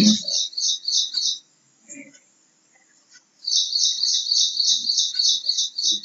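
A small bird chirping rapidly, high short chirps about six a second, in two runs: the first stops about a second and a half in, the second starts about three and a half seconds in.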